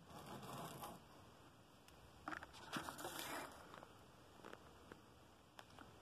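Faint rustling and scraping of handling, in two spells of about a second each near the start and in the middle, with a few light clicks later; otherwise near silence.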